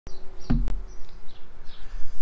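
Small birds chirping a handful of short high notes, over a low rumble, with one sharp click about two-thirds of a second in.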